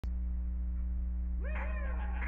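A steady low electrical hum. About one and a half seconds in, a pitched sound glides up and then down as a song's backing track begins.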